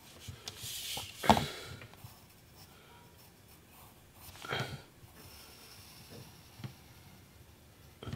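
Graphite pencil sketching on paper: a scratchy stroke in the first second, with short sharper sounds about a second in and near the middle, and faint light strokes between.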